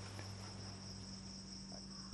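Faint, steady, high-pitched insect chirring in the background, with a low steady hum underneath.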